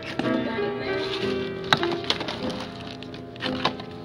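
Classical piano background music with sustained notes, and a sharp knock about two seconds in from jars being moved about on a crowded shelf.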